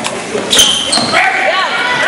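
A basketball striking the metal rim on a free-throw attempt about half a second in: a sharp clang with a brief ring, then a second, lighter knock. Voices of players and spectators shout from about a second in.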